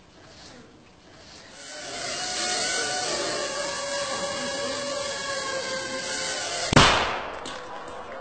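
Small quadcopter drone buzzing with a steady whine that grows louder from about a second and a half in, then one sharp bang near the end: its three-gram shaped explosive charge going off.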